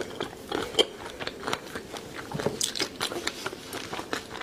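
A person chewing a mouthful of chili-sauced food, with irregular wet crunches and mouth clicks, several a second.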